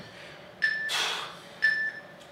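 Workout interval timer beeping the countdown to the end of a work period: two short, high electronic beeps about a second apart. A short breathy hiss falls between them.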